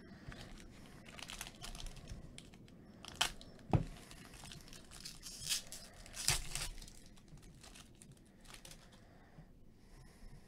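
Foil trading-card pack wrapper crinkling and tearing as gloved hands open it, with a few sharp snaps about three, four and six seconds in. Quieter rustling of the cards being handled follows near the end.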